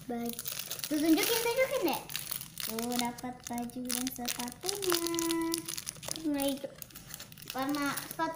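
Clear plastic toy wrapper crinkling and rustling in a child's hands as it is pulled and torn open, under children's voices calling out and a held sung note.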